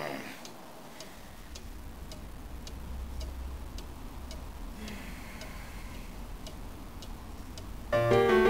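A clock ticking steadily, about two ticks a second, over a low steady hum.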